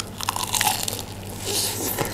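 Crunching of crispy breaded fried chicken being bitten and chewed close to the microphone: a burst of crisp crackles at the bite, then quieter chewing.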